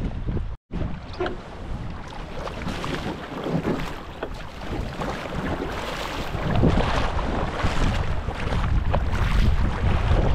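Wind buffeting the microphone over water splashing from paddle strokes as a surfski is paddled out through shallow water. There is a short gap of silence about half a second in, and the sound grows louder from about the middle on.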